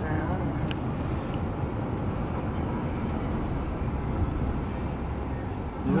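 Steady road and engine noise of a moving car heard from inside the cabin, a low, even rumble.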